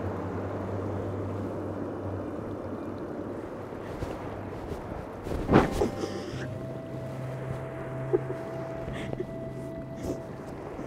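Wind blowing on the microphone in a snowstorm, a steady rushing noise, with one brief louder gust or knock about halfway through. Low steady held tones come in after about six seconds.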